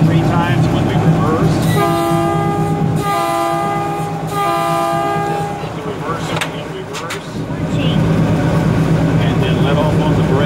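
Locomotive air horn sounded three times in quick succession, each blast about a second long and a chord of several notes, over the steady drone of the Baldwin RS-4-TC's diesel engine heard from inside the cab.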